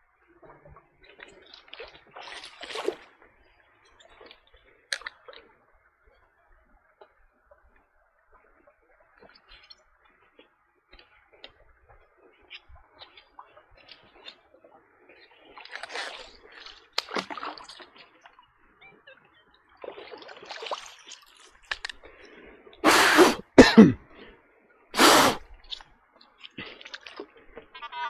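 Water sloshing and splashing quietly in a creek, then three loud, short blasts of breath near the end: blowing water out of the Nokta Legend metal detector's waterlogged speaker.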